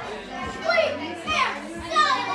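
Excited, high-pitched voices with no clear words.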